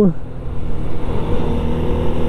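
Honda Biz 100's small single-cylinder four-stroke engine running steadily while riding along, with wind rushing over the microphone.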